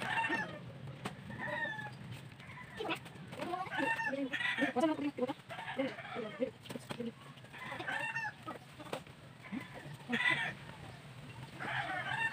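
Chickens clucking and calling repeatedly, with a dense run of calls about four to five seconds in. Occasional dry knocks of sticks as branches are pushed into a sack.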